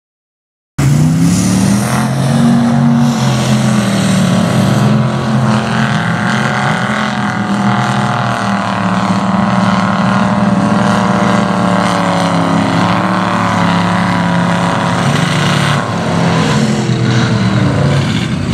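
A lifted Ford mud truck's engine running hard under load through a mud pit, its note holding high and wavering a little as the throttle changes. The sound cuts in abruptly about a second in.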